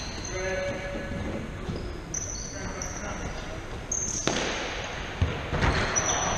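Indoor five-a-side football on a wooden hall floor: trainers squeaking on the boards, then several sharp ball kicks or thuds from about four seconds in, echoing in the hall.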